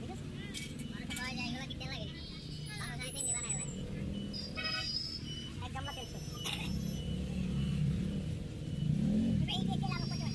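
Background street sound: people's voices talking at a distance over a steady motor-vehicle engine hum, which rises and falls in pitch and grows louder near the end.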